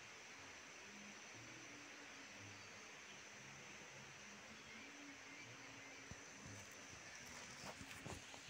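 Near silence: faint background hiss, with a small click about six seconds in.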